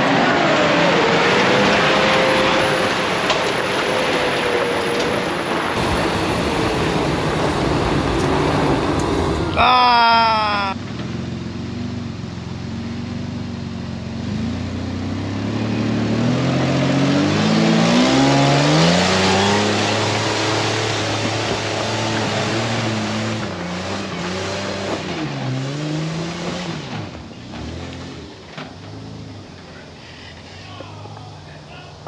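Toyota 80-series Land Cruiser engine revving repeatedly, its pitch climbing in steps and dropping back, as it works over a slippery trail. A loud rushing noise fills the first ten seconds, and a short high-pitched sound cuts in about ten seconds in.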